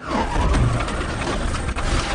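Film sound of a propeller aircraft's engines, loud and steady with a deep rumble, cutting in suddenly as the plane flies low in trouble before its crash.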